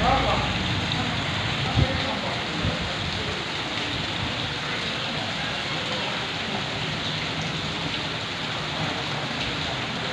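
Steady rain falling onto standing water across a flooded yard, an even hiss of splashing drops. A single short knock sounds a little under two seconds in.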